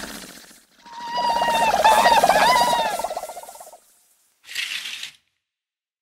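Cartoon sound effect: a wavering, high-pitched voice-like cry that lasts about three seconds and trails off, followed about half a second later by a brief hissy swish.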